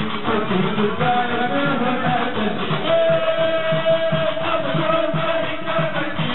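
Live Tunisian stambali music: a plucked gumbri bass lute repeats a pulsing rhythm under the clatter of shqashiq iron castanets. A singer holds one long note from about halfway through.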